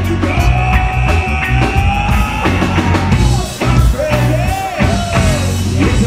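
A live rock band playing, with drums and bass driving underneath. A long held lead note runs over them for the first couple of seconds, then a wavering melodic phrase follows.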